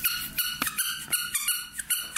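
Squeaky toy ball squeezed repeatedly in quick succession, giving a run of short, high-pitched squeaks, several a second.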